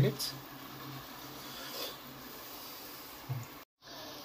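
Faint steady hiss from a lidded pan of korma cooking on a low gas flame. It cuts off suddenly near the end.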